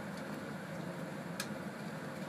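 Steady fan and airflow noise of a biological safety cabinet, with a single light click about one and a half seconds in.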